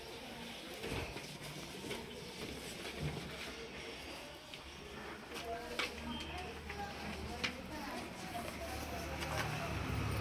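Faint background murmur of several people's voices in a room, with a few small clicks and knocks.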